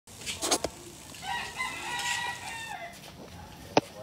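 A rooster crowing once: one drawn-out call that dips in pitch at the end. A few sharp clicks come before and after it, the loudest just before the end.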